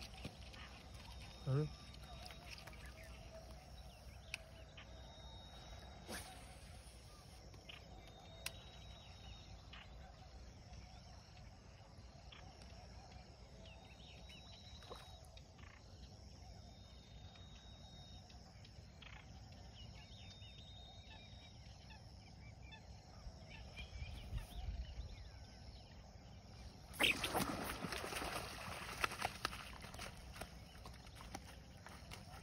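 Quiet outdoor pond-side ambience with faint, thin high calls that come and go. Near the end comes a stretch of loud rustling and crunching close to the microphone.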